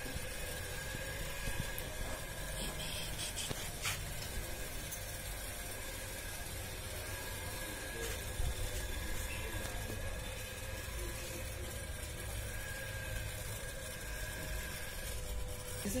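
A steady background hum, two held tones over low rumbling noise, with no distinct event.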